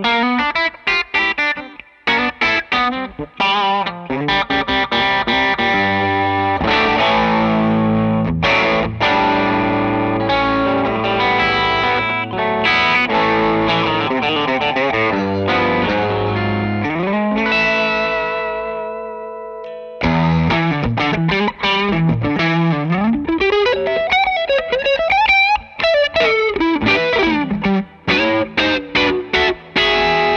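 Gretsch Broadkaster hollow-body electric guitar played through an amp: chords and single-note lines. In the middle a chord is left to ring out and fade, then the playing comes back in with pitch bends.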